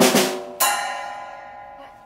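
A loud drum-like crash hits suddenly, and about half a second later a second hit rings out with a bright, many-toned ring that slowly fades away: a percussive sound-effect sting dropped into the skit.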